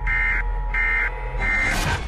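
Emergency-broadcast-style alert tones from a produced radio intro: short buzzy beeps repeating about once every 0.7 s over a steady low hum and a held tone. A rising whoosh swells in near the end.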